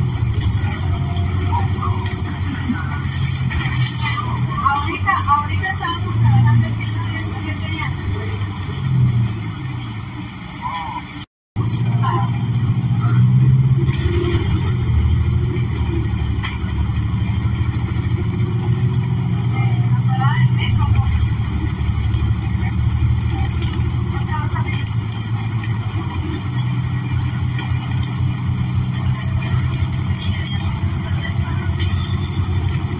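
Cabin sound of a moving New Flyer XN40 bus: the low drone of its Cummins Westport L9N natural-gas engine and Allison transmission, rising and falling in pitch with speed, with passengers' voices in the background. The sound cuts out briefly about eleven seconds in.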